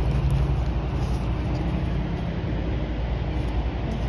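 Steady low hum of an idling engine, easing slightly after the first second.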